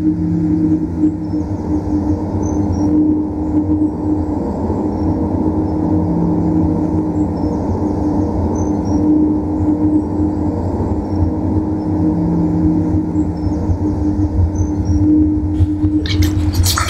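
A steady low rumbling drone with a couple of sustained deep tones that slowly swell and fade.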